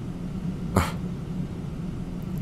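A short breathy sound from a man's voice, a brief exhale or stifled laugh, about a second in, over a steady low hum from the recording.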